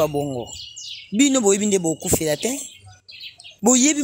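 A woman speaking in short phrases with a brief pause about three seconds in, and faint bird chirps in the background.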